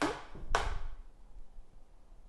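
A single sharp knock about half a second in, ringing out briefly in a small tiled room.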